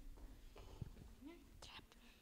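Near silence with faint, hushed voices and a soft knock about a second in.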